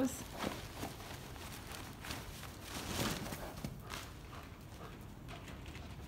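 A horse walking on soft indoor-arena footing: a few scattered, quiet hoof thuds, with the rustle of a plastic tarp slipping off its back.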